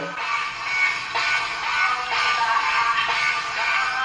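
Rock music: a Malaysian band's song with a band backing, the male lead vocal carrying the melody.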